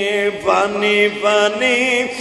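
A man's voice chanting in the melodic, sung style of a Bengali waz sermon, holding long notes with a wavering pitch. There is a short break and an upward glide about half a second in.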